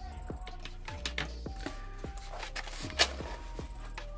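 Background music with held notes of a slow melody, over small taps and scrapes of a cardboard mailer box being handled; one sharper knock about three seconds in.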